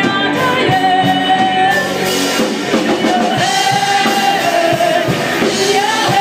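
Live rock band playing: a woman singing lead with long held notes over electric guitars, bass guitar and drums.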